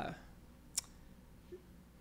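A woman's voice trails off at the very start, then a pause of low room tone broken by a single sharp click about a second in.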